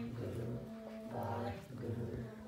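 Harmonium notes held under singing voices in a Sikh kirtan hymn, the pitches shifting every second or so.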